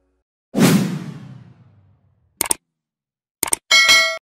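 Animated subscribe-button sound effects: a whoosh that fades away over about a second and a half, then a mouse click, a quick double click, and a short bell chime near the end.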